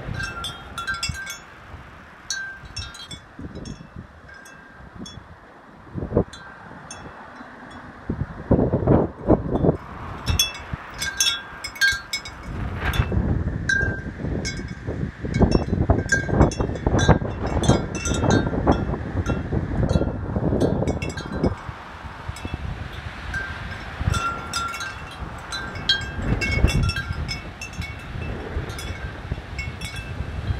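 Wind chimes ringing and clinking irregularly in a gusty wind ahead of a thunderstorm. Wind buffets the microphone in gusts that grow much stronger after about eight seconds.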